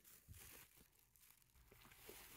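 Near silence, with faint rustling of plastic shopping bags being searched through by hand, a little louder in the first half-second.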